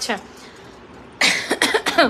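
A woman coughing: a short fit of several coughs in quick succession, starting a little over a second in.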